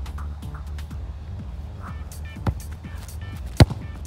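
Background music with a steady beat, and a single sharp thud of a football being kicked hard about three and a half seconds in.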